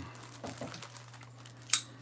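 Packaging of a new box of Q-tips crinkling as it is handled and opened, with one short, louder crackle near the end.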